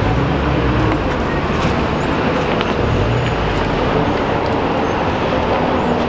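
A vehicle engine running steadily, with traffic noise.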